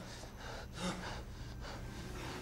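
A person's breathing, several short, faint breaths or gasps over a low steady hum.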